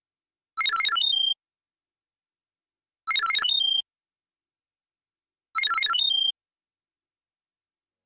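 Electronic notification chime sound effect played three times, about two and a half seconds apart. Each is a quick run of bright notes ending on a short held tone, marking a pop-up message appearing on screen.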